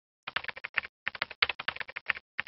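Rapid computer-keyboard typing clicks, a typing sound effect keyed to on-screen title text being typed out letter by letter. It starts about a quarter second in and comes in quick runs, with a brief pause near the middle.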